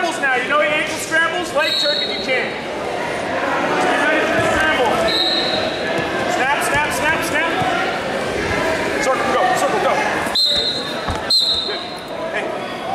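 Indistinct voices talking and calling out in a large, echoing gym, with occasional thumps of wrestlers' bodies and feet on the mat.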